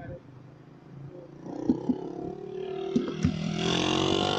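Several people shouting at once, building up and getting louder toward the end, with a few sharp clicks along the way.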